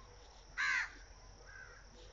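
A single short animal call, falling in pitch, about half a second in, followed by a fainter short call a second later, over a faint steady background hiss.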